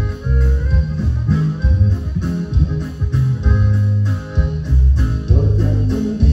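A live band plays dance music without singing. Bass guitar and plucked guitar lead, over a strong, rhythmic bass line.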